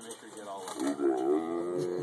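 Tigress giving a long, drawn-out whining call for the raw chicken held out to her, starting about half a second in and held for over a second.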